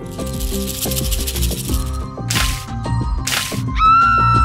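Background children's music with a rattling sound effect for about the first second and a half, then two short bursts of hiss.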